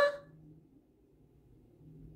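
The end of a woman's spoken "huh?" rising in pitch, then near silence: faint room tone with a low hum.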